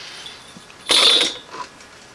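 Tools being moved about on a leatherworking bench: a short scraping clatter about a second in as a steel rule is set down and a plastic mallet is picked up.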